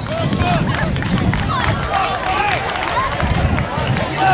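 Many overlapping children's and adults' voices calling and chattering at once, none clear enough to make out, over a steady low rumble.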